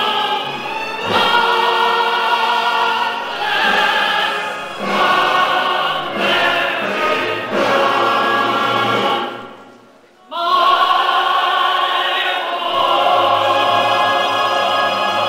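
A group singing a song, led by a woman's voice through a microphone, in long held phrases. There is a brief break between phrases about ten seconds in.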